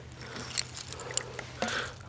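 Hand digging in loose soil, roots and dry leaves to work a buried glass bottle free: faint crunching and scraping with scattered small clicks.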